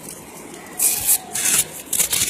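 Hands rubbing and sliding a sheet of paper close to the microphone: three short, rustling scrapes in the second half.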